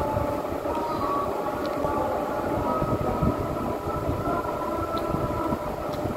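The azan, the Muslim call to prayer, sung over a mosque loudspeaker in long, slowly wavering held notes. It marks sunset and the moment to break the Ramadan fast.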